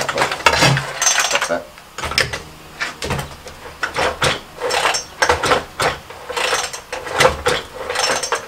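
Easy-start recoil starter of an Alpina chainsaw pulled again and again in short strokes: a series of ratcheting rasps and clicks as the internal spring is wound up, with the engine not running.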